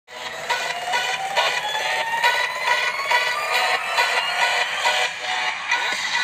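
Pop dance music with a steady beat, about two beats a second, played through an HP EliteBook 840 G3 laptop's small built-in speakers, so it sounds thin with almost no bass. A tone rises slowly through the first few seconds.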